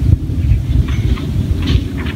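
A loud, steady low rumble with a few faint, short scratchy sounds above it.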